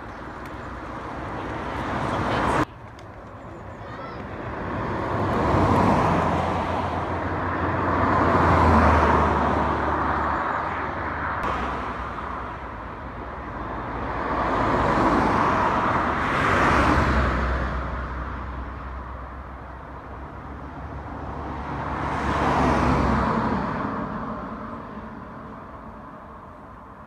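Fast road traffic on a 60 mph road: about five vehicles pass one after another, each swelling up and fading away. The sound drops abruptly about three seconds in.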